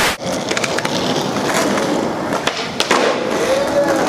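A brief burst of TV static hiss, then skateboard wheels rolling over asphalt: a steady rough rumble with scattered clicks.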